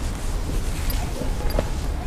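Street ambience picked up by a handheld camera on the move: a steady low rumble of wind and handling noise on the microphone, with a few faint knocks.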